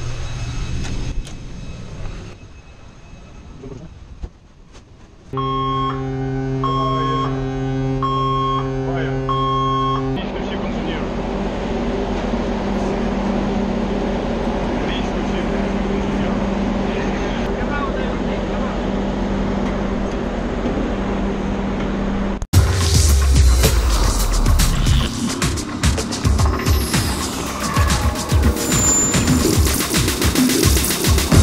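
Steady machinery drone with a stretch of a held electronic tone and a repeating beep about every second and a half. Loud music cuts in suddenly about three-quarters of the way through.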